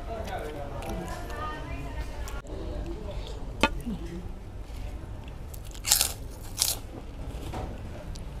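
Close-up eating sounds: a person chewing a mouthful of chicken porridge, with a sharp click about three and a half seconds in and two short crunches around six seconds in, the loudest sounds here.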